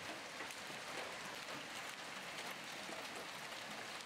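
Small hailstones falling on asphalt pavement: a steady patter of many tiny impacts.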